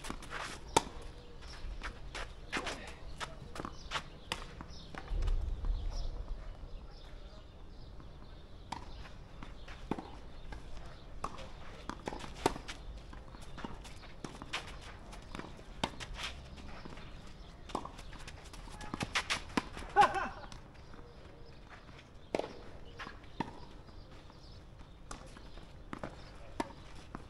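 Tennis rally on a clay court: rackets striking the ball and the ball bouncing, heard as a string of sharp, irregularly spaced pops, with the loudest hits about a second in and about twenty seconds in.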